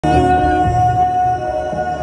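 Hip-hop concert music played loud over a venue PA and recorded from the crowd on a phone: a held high tone over deep bass notes.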